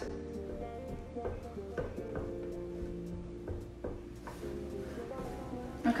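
A stick stirring melting candle wax in a metal pouring pitcher, with light scattered clicks and scrapes against the pitcher's side. Quiet music with held notes plays underneath.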